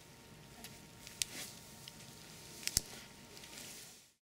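Gloved hands pressing and smoothing a strip of medical tape over cotton wool on the arm: faint rustling and handling noise, with two sharp little clicks about a second and a half apart.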